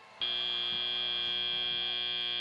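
Competition field buzzer sounding one long steady buzz, marking the end of the autonomous period.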